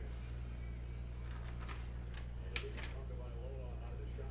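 Steady low electrical hum, with a few brief rustles and one sharp click about two and a half seconds in as a printed paper sheet is handled and set down.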